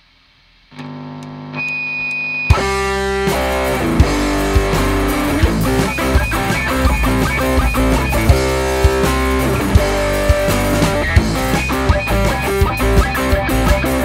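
A live reggae band plays the song's instrumental intro. An electric guitar starts with a held chord about a second in, and the drum kit and the rest of the band come in together at about two and a half seconds, playing a steady beat.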